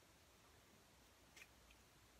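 Near silence, with a faint small click about one and a half seconds in as the plastic cap is pulled off a pregnancy test stick.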